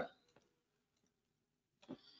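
Near silence in a pause between spoken sentences, with the tail of a word at the very start and one brief, faint click just before the end.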